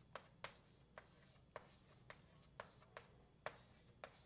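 Faint writing on a board: about eight short, irregular taps and clicks of the writing tool as a line of mathematics is written out.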